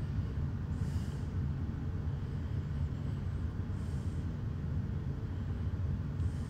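A steady low rumble of background noise, with three soft hissing puffs about three seconds apart.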